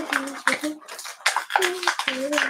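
A young girl vocalizing a beat-box-like rhythm: short sung 'dum' notes alternating with hissed 'chi' sounds in quick succession.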